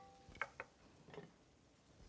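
Near silence: room tone, with two faint ticks about half a second in.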